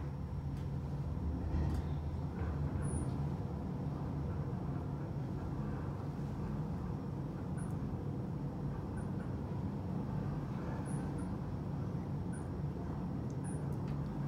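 Thyssenkrupp high-rise elevator car travelling up at speed, about 1,000 feet per minute, heard from inside the cab: a steady low rumble and hum of the car running in the shaft, with a few faint ticks.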